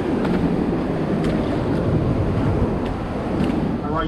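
Ocean surf washing over rocks, a steady rushing noise, mixed with wind buffeting the microphone.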